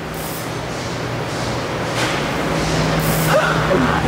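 Steady workshop machinery noise with a low hum, broken by two short hisses, one about a quarter second in and one about three seconds in.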